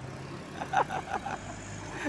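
Road traffic noise: a steady engine hum and road rumble as a yellow Mitsubishi Fuso diesel light truck approaches head-on. The hum drops a little in pitch about one and a half seconds in.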